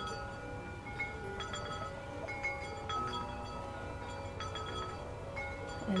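Wind chimes ringing in the breeze: irregular, scattered strikes of several different notes, each tone ringing on and overlapping the others.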